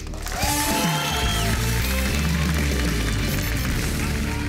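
The show's music swells in with steady bass right after the winner is named, over audience applause and cheering.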